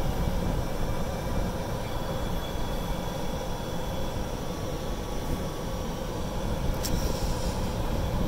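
Golf cart driving along a paved road: steady motor and tyre noise, heard from the driver's seat, with a brief click about seven seconds in.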